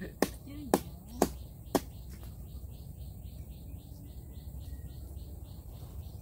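Four sharp clicks about half a second apart in the first two seconds. After that comes a faint, high chirping call repeated about three to four times a second, of the insect or bird kind.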